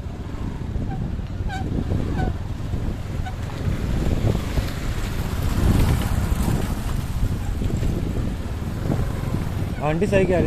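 Wind buffeting the microphone of a moving motorcycle, over the running of its engine and tyre noise. The noise swells about halfway through.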